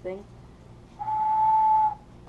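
A pink sculpted whistle blown once: a single clear note held for about a second, starting about a second in and cutting off just before the end, its pitch rising slightly.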